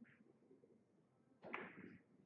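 A single sharp knock about one and a half seconds in, dying away quickly, over faint hall room tone.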